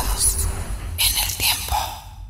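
Logo sting: a whispered, effect-laden voice in two hissy bursts over a low rumble, fading toward the end.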